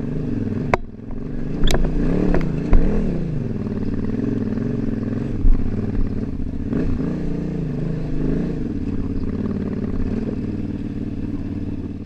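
KTM 950 Super Enduro's V-twin engine pulling the bike up a rocky trail at low speed, its note rising and falling with the throttle. A few sharp knocks and clatter from rocks come in the first three seconds.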